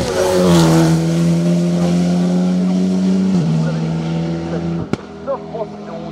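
Alpine A110 race car's turbocharged four-cylinder engine at full throttle passing close by, its note falling as it goes past and then holding steady, with a sudden drop in pitch at a gear change about three and a half seconds in. A short sharp click comes near the end.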